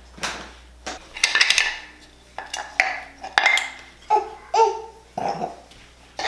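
Toy puzzle pieces clicking and clattering, with a few short vocal sounds from a toddler in between.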